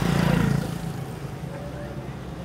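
A small motorcycle passing close by, its engine loudest about half a second in and then fading as it moves away.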